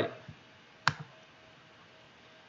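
A single sharp click at the computer, with a faint second tick just after it, against quiet room tone.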